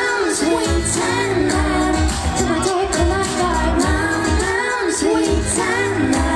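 A woman singing a pop song live into a handheld microphone over a backing track with a steady drum-and-bass beat.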